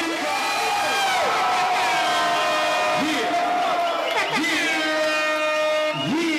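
A man's voice over the PA making three long, drawn-out calls, each sweeping up into a held note.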